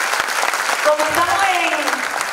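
An audience clapping: dense, steady applause, with a voice rising over the clapping about halfway through.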